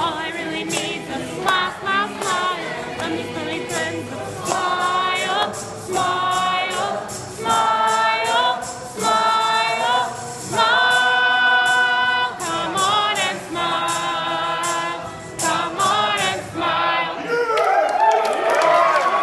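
A song with singing and long held vocal notes over a steady beat, played loudly through a hall's PA speakers.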